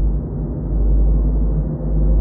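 An edited-in dramatic music sting: a loud, deep, muffled drone with a heavy low rumble, holding steady.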